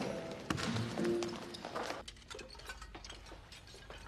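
Basketballs bouncing on a gym floor, a few scattered thuds over background music. About halfway through they stop and only a low steady hum remains.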